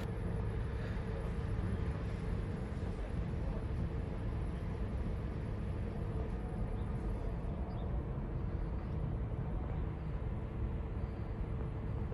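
An engine running steadily at idle, a low even rumble with a faint hum, with no sudden sounds.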